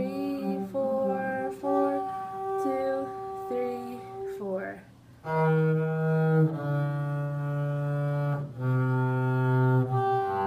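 A woman's voice singing a melody in the first half. From about halfway on, a double bass is bowed in long, held low notes, about a second each.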